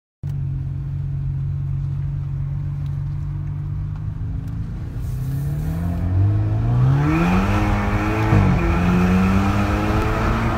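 BMW 528i F10's turbocharged 2.0-litre four-cylinder engine, Stage 2 tuned, heard from inside the cabin: it holds a steady low note for about five seconds, then rises in pitch as the car accelerates in first gear, drops sharply about eight seconds in as it shifts up to second, and picks up again.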